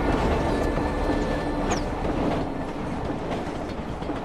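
Train rushing past close by, a dense rumble and clatter that slowly grows quieter, with a brief high squeal about halfway through.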